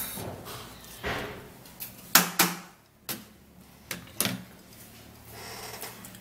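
A yellow plastic sieve and a glass bowl knocking together while blended liquid is strained, about five sharp knocks with two close together in the middle and faint handling noise between.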